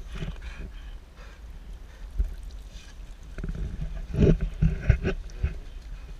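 A dog wading and splashing in shallow lake water, with a few louder splashes in the last two and a half seconds over a low rumble.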